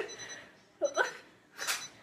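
Short, quiet vocal sounds about a second in, then a single sharp crack near the end as a hard-boiled egg is smashed on a head.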